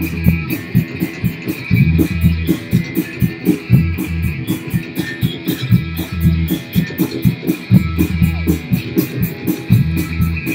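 A live amateur rock band playing a guitar-heavy passage: electric guitars and bass guitar over a steady drum beat with regular cymbal hits.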